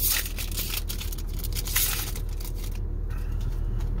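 A foil Pokémon booster pack being torn open and crinkled. There is a sharp rip at the start and another burst about two seconds in, then quieter handling. A steady low hum runs underneath.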